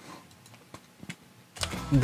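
Faint computer mouse clicks, two short ones about a second in, followed by a low rumble rising near the end.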